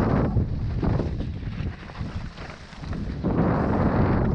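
Wind rushing over the microphone of a camera on a mountain bike descending a loose dirt trail, mixed with the rumble of the tyres and the rattle of the bike over the ground. It drops away for about a second midway, then comes back louder near the end.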